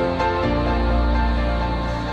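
Background music: soft instrumental chords held over a deep bass note, changing chord about half a second in.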